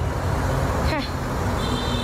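Street noise picked up by a phone: a steady low rumble of traffic, with a brief voice about a second in.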